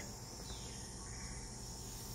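Faint, steady insect chorus from a rainforest field recording played through a small speaker.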